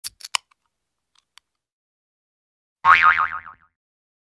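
Three quick clicks, then about three seconds in a wobbling cartoon 'boing' spring sound effect that lasts under a second and dies away.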